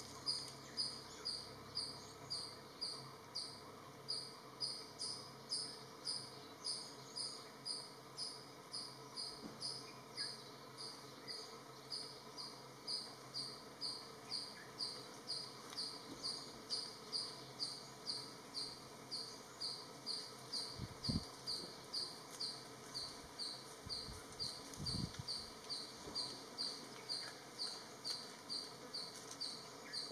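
An insect chirping steadily: short high-pitched chirps repeated about twice a second without a break. Two brief low thumps come about two-thirds of the way through.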